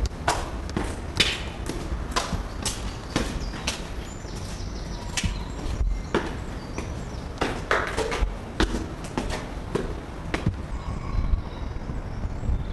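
Footsteps on a concrete staircase and floor, an uneven run of hard knocks and scuffs about one or two a second, over a low rumble from the camcorder being handled.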